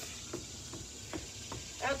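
Running shoes jogging in place on a wooden deck: soft, light footfalls about two or three a second, over a steady background hiss.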